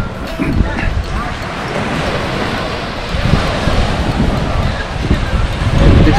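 Wind buffeting the microphone in uneven gusts, over a steady hiss of surf breaking on the shore.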